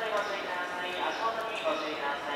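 A voice speaking over a station platform's public-address loudspeakers.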